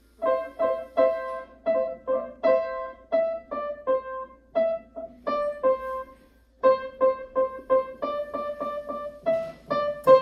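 Upright piano played by hand: a simple melody of separate notes, about two to three a second, with a short pause about six seconds in.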